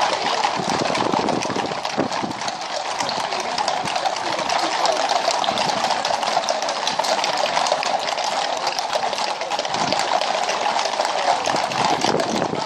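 Hooves of a long line of ridden horses walking on a tarmac road: a dense, continuous clatter of many overlapping clip-clops.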